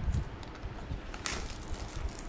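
Clear plastic shrink wrap crinkling as it is ripped off a boxed model by hand, with a louder crackle a little over a second in.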